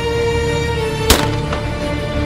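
A single shot from a 12-gauge Caesar Guerini Invictus I Sporting over-and-under shotgun, a sharp crack about a second in, over background music with long held notes.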